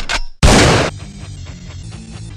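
Two loud blasts of harsh, hissing noise, the first cutting off just after the start and the second about half a second in, lasting about half a second; then background music.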